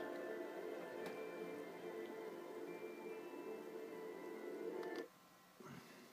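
Sustained, slow-moving documentary soundtrack music playing from a TV and picked up in the room; it cuts off suddenly about five seconds in as playback is paused.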